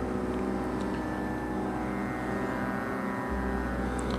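Background devotional music holding a steady, sustained drone, with no voice over it.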